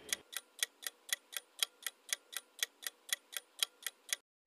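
Clock-tick countdown timer sound effect: crisp, evenly spaced ticks, about four a second, timing the pause for a quiz answer.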